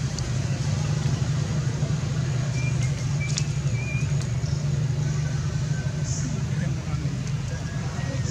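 Steady low rumble at an even level, with a few faint, short high chirps about three seconds in and again near six seconds.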